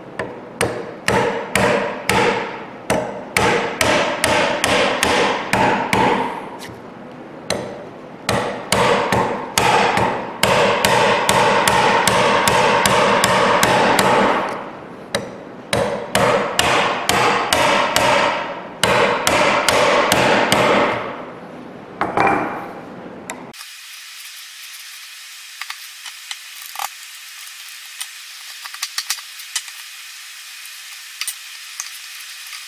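A chisel struck with a mallet, chopping out a half lap joint in a pine leg: repeated sharp blows, often several a second, in runs with short pauses. Near the end the blows stop, leaving only a faint hiss with a few light clicks.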